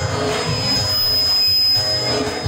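Live group song with tambourine, the singing thinning out under a loud, steady noisy wash that swells through the middle and eases off near the end, with a thin steady high tone running through it.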